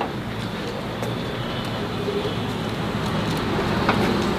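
Steady background noise of road traffic, growing slightly louder near the end, with a single sharp click just before the end.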